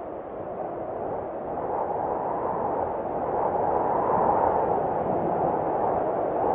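Atmospheric intro sound effect: a muffled, steady rushing noise with no tune, slowly swelling in loudness.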